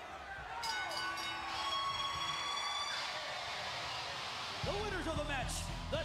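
Wrestling ring bell rung to signal the end of the match after the three-count, its steady ringing tones fading over about two seconds. About four and a half seconds in, rock entrance music starts with a heavy bass beat.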